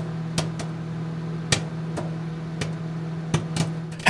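An intro sound effect: a steady low hum with sharp clicks and knocks at irregular intervals.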